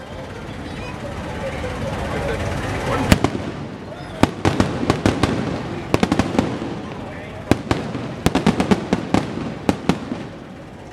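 Aerial fireworks shells bursting overhead: one sharp bang about three seconds in, then quick clusters of sharp reports through the rest of the display.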